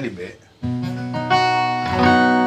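Acoustic guitar chord strummed about half a second in and left ringing, then strummed again more loudly about a second later.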